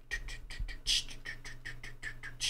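A man beatboxing a hi-hat pattern with his mouth: quick, even 'ts' clicks at about seven a second, with one low thump a little before the middle.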